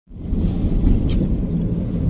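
Steady low rumble of a car driving on a road, heard from inside the cabin. It starts abruptly just after the beginning, and a brief high click sounds about a second in.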